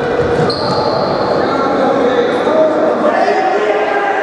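Players calling out in an echoing sports hall during a futsal match, with thuds of the ball on the court. A thin high tone starts about half a second in and drops slightly in pitch over a couple of seconds.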